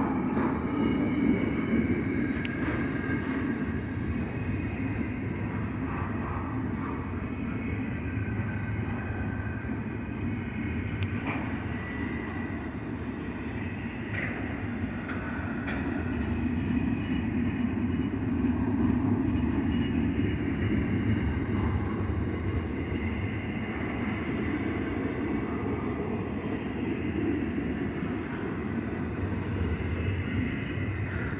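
Double-stack intermodal freight cars rolling past: a steady rumble of steel wheels on rail, with brief high squeals now and then.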